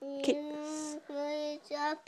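A toddler's voice holding a sung vowel on one steady pitch three times: a long note of about a second, then two shorter ones.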